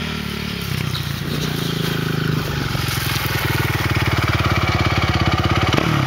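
Sport quad bike (ATV) engine running under throttle, growing louder as the quad comes toward the listener, with a brief change in engine note about two and a half seconds in and again near the end.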